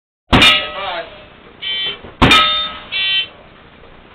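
Two gunshots from a long gun, about two seconds apart, inside a wooden shed. Each shot is followed within a second by a bright metallic ring from steel targets being hit.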